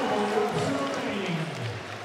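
Fight crowd applauding and cheering with voices calling out at the end of a round, the noise dying down toward the end.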